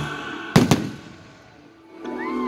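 Two sharp bangs of aerial firework shells bursting in quick succession about half a second in, fading into quiet. The tail of background music dies away at the start.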